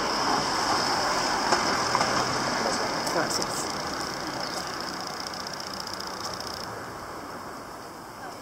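Street traffic: a motor vehicle's engine running and slowly fading away, with voices in the background.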